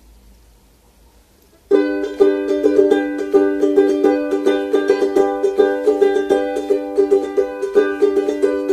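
Ukulele strummed in chords, starting suddenly about a second and a half in and then carrying on in a steady strumming rhythm.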